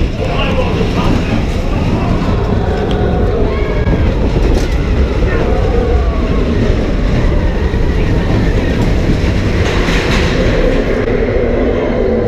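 Roller coaster train running along its track at speed: a loud, continuous rumble and clatter from the wheels on the rails.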